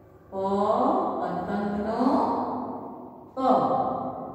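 A woman's voice sounding out a syllable in long, drawn-out, chant-like notes, twice, echoing in the classroom.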